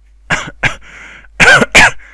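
A man coughing: two short coughs, then two much louder coughs in quick succession about a second and a half in.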